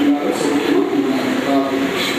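A man singing a slow devotional chant into a microphone, his voice gliding between long held notes.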